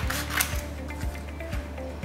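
Scissors snipping through a sheet of paper, with two sharp cuts in the first half second, over background music with a steady low beat.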